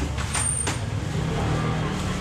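A steady low engine rumble, like a motor vehicle idling close by, with a short hiss about half a second in.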